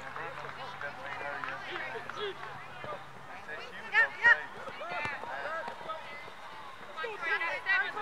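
Indistinct voices of players and spectators around a soccer field, with two short, loud shouts about four seconds in.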